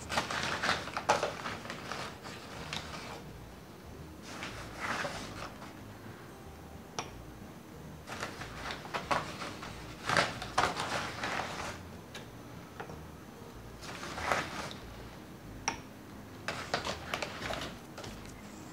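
Flour being scooped with a drinking glass and poured into a glass mixing bowl, heard as several short, soft rustling bursts with a couple of light clicks of glass between them.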